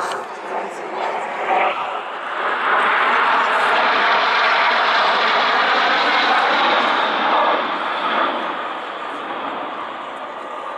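Four L-39 Albatros jet trainers flying past in close formation, their jet engines building to a loud, steady rush about two and a half seconds in and easing off again near the end.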